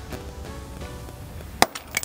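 A steel hammer strikes a bolt set in a socket, knocking a wheel lock nut out of the socket: one sharp metallic clank about one and a half seconds in, with another strike at the very end, over quiet background music.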